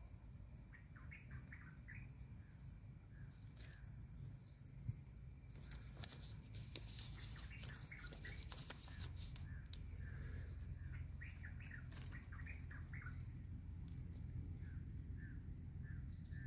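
Faint bird chirps, short calls coming in loose clusters, over a low steady rumble. A few scattered clicks and rustles fall in the middle of the stretch.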